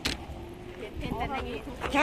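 Phone handling noise as the camera is swung around: a single knock at the start and a low, uneven rumble, with faint voices in the background about a second in.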